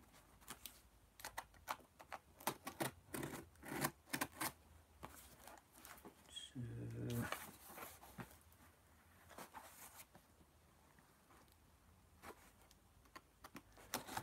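Craft knife slitting packing tape on a cardboard box: a run of short, faint scratching cuts and scrapes, thinning out near the end. A brief low murmur from a man's voice about halfway through.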